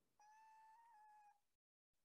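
Near silence, with a very faint thin whine-like tone lasting about a second, then a complete dropout.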